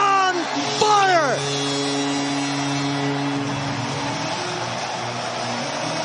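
Arena goal horn sounding a steady low tone after a Bruins goal, cutting off about three and a half seconds in. Over it come a couple of whooping shouts that fall in pitch in the first second and a half, with a bed of arena noise throughout.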